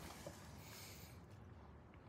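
Near silence, with a faint soft rustle of a paper instruction sheet being unfolded by hand.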